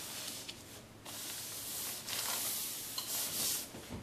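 Hands rubbing and smoothing a paper-backed iron-on adhesive sheet flat over fabric: a soft, papery rubbing that picks up about a second in.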